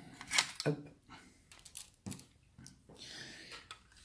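A few light clicks and small knocks of a die-cast model pickup truck being handled, with faint rustling between them.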